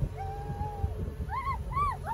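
Family voices whooping in celebration: one long held "woo", then two short hoots that rise and fall, over a low rumble of wind.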